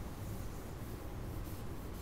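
Felt eraser wiping chalk off a chalkboard in a run of quick, soft brushing strokes.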